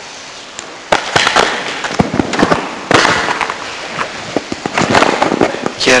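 Loud, irregular crackling and popping, starting suddenly about a second in and jumping louder again about three seconds in.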